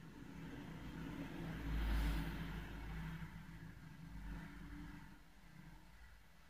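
Faint low rumble of a passing vehicle, swelling to a peak about two seconds in and then fading.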